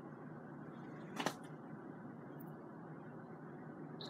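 Quiet, steady room hiss with one short, sharp click a little over a second in.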